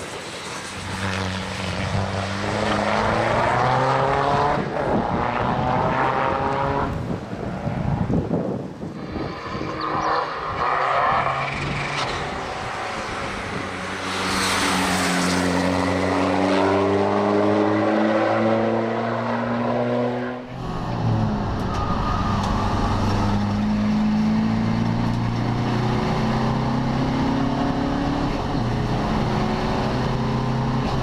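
Škoda Fabia RS race car's 1.9 TDI diesel engine under hard acceleration as it passes by, its pitch rising through each gear and dropping at the shifts. About two-thirds of the way in the sound changes abruptly to a steadier, deeper engine drone heard from inside the cabin.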